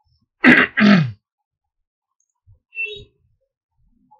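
A man clearing his throat, two quick rasping bursts in a row about half a second in.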